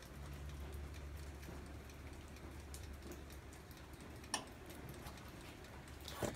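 Quiet room tone: a low steady hum, with one small click a little past four seconds in.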